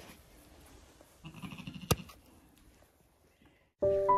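A babydoll sheep gives a brief, faint bleat about a second in, followed by a sharp click. Piano music starts near the end.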